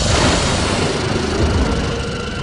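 Cartoon sound effect of a heavy machine rumbling, a loud low rumble with hiss that eases a little near the end.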